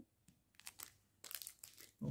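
Faint crinkling of a small clear plastic packet handled in the fingers: a few soft crinkles, most of them in the second half.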